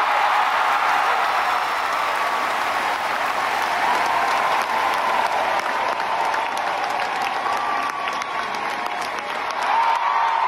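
Large theatre audience applauding and cheering: dense, steady clapping with voices shouting over it.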